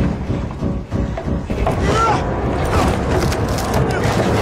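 Soundtrack of a TV battle scene: a dense, low rumbling din with shouted voices and rising and falling cries over it.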